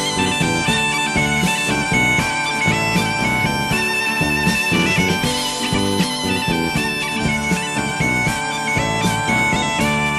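Instrumental break of a song: a gaita (bagpipe) plays a melody over its steady drone, with a regular percussion beat beneath.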